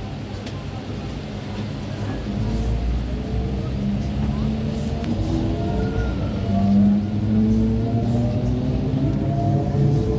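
Electric commuter train pulling away from a station, heard from on board: a low rumble with a motor whine of several tones that rises steadily in pitch from about two seconds in as the train gathers speed.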